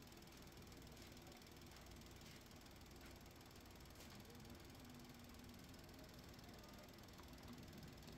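Faint, steady low hum of a Toyota Passo's engine idling, with a few soft clicks.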